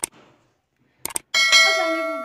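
Subscribe-button animation sound effect: a sharp mouse click, two quick clicks about a second in, then a bright bell chime that rings on and slowly fades.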